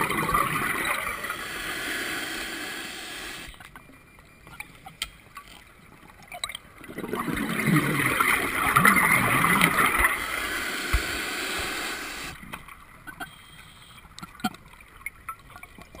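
Open-circuit scuba regulator exhaling underwater: two long bubbling rushes of exhaust bubbles, the second starting about seven seconds in, with quieter stretches and faint clicks between them.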